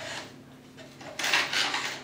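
Adjustable arm of a wooden skein winder slid along its frame: a short sliding scrape of wood and hardware, loudest about a second in, with a softer one at the start.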